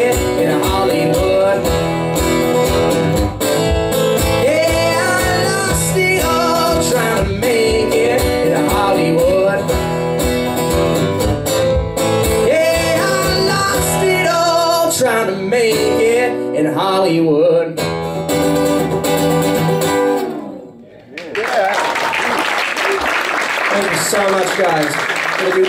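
Acoustic guitar strummed under a man's blues singing, over a steady low beat, with the song ending about twenty seconds in. The audience then applauds.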